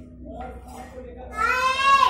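A short, loud, high-pitched drawn-out cry, rising slightly in pitch, about one and a half seconds in.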